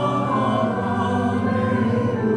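Congregation singing a hymn in long held notes, accompanied on a keyboard.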